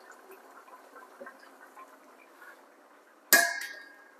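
Kidney beans sliding softly from a metal mesh strainer into the stew, then a single sharp metallic clink a little over three seconds in, ringing briefly as the strainer knocks against the pot.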